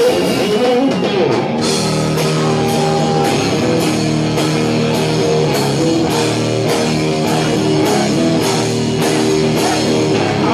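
Rock band playing live: an electric guitar riff with a drum kit. Cymbal and drum strokes come in about a second and a half in and keep a steady beat of about two a second.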